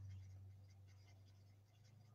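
Near silence: faint scratching of an alcohol marker tip colouring on cardstock, over a low steady hum.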